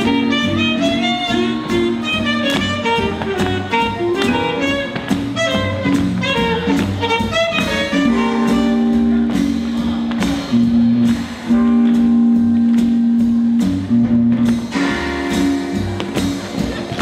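Live jazz band playing a swinging blues: drums keep a steady beat under saxophone and brass lines. From about eight seconds in, the band holds long sustained notes.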